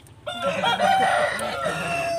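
Rooster crowing: one long, loud crow that starts about a quarter of a second in.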